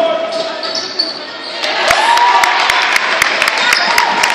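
Basketball game in a gym: crowd noise swells about a second and a half in, then a quick run of thuds from the ball and players' feet on the hardwood court, with sneaker squeaks, as the players run down the court.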